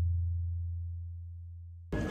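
A deep, low bass tone from an editing impact sound effect, fading steadily and then cut off abruptly just before the end.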